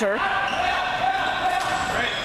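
A steady, high-pitched tone with overtones, held for about a second and a half and cut off near the end.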